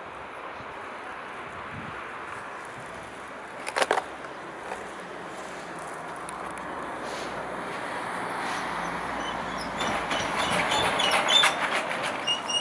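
Street traffic: a steady rush of a passing vehicle that grows louder towards the end. A brief cluster of sharp clicks comes about four seconds in, and a few short high chirps come near the end.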